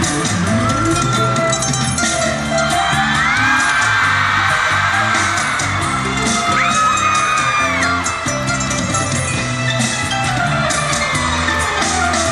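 Live pop concert music with a steady, driving dance beat played over the arena sound system, with whoops and screams from the audience.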